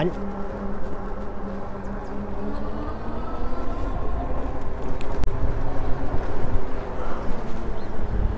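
Riding noise of a 20x4 fat-tire folding e-bike on pavement: wind rushing over the microphone and tyre rumble, with a faint steady whine. The low rumble grows stronger about halfway through.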